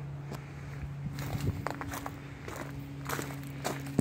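Footsteps crunching on gravel, irregular and unhurried, over a steady low hum.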